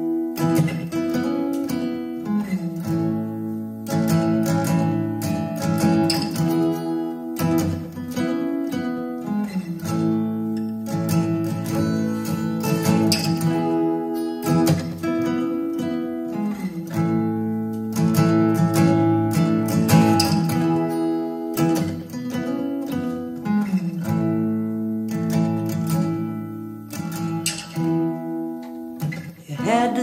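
Solo acoustic guitar playing a slow instrumental intro, picking and strumming chords that change every couple of seconds.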